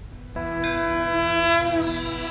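TV segment-intro musical sting: a sustained synthesized chord that starts about a third of a second in. A shimmering high layer joins it after the middle.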